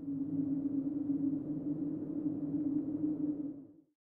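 A low, steady droning tone, a transition sound effect, that fades in and fades out shortly before the end.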